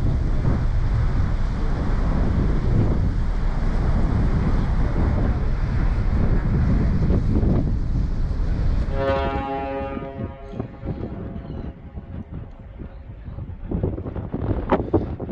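Wind rushing over the microphone on a ferry's open deck, over the ship's churning wake. About nine seconds in, the ship's horn sounds: one steady, pitched blast of about two seconds that fades away.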